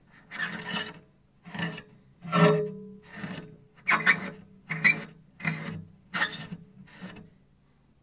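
A cloth rubbed hard up and down along cello strings, about nine separate strokes, scrubbing off built-up rosin. One stroke about two and a half seconds in draws a short pitched note from a string.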